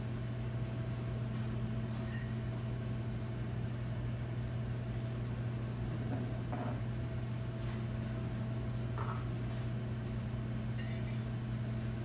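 Steady low electrical hum of kitchen appliances, with a few faint clinks and knocks of things being handled.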